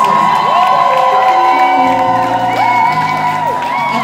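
Live soul band playing, with long held high notes that slide up into pitch over the instruments, and an audience cheering and whooping.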